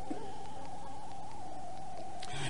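Steady background tone with low hiss in a recording, holding one mid pitch without change.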